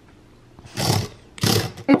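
Remote-controlled HexBug Fire Ant robot running in two short noisy bursts of about half a second each.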